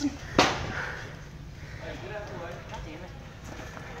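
A sharp knock about half a second in, then a steady low rumble of longboard wheels rolling over a smooth, hard store floor, with faint voices behind it.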